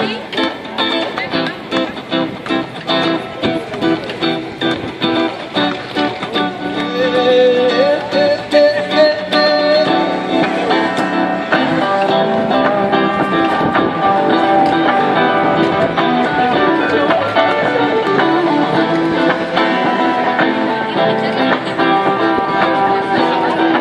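Solo guitar played by a street busker: rhythmic strummed chords, then fuller, louder sustained playing from about ten seconds in, with a held sliding note just before.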